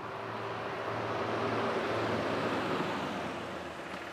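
Steady outdoor background noise: a soft, even rush with a faint low hum and no distinct events, swelling slightly in the middle.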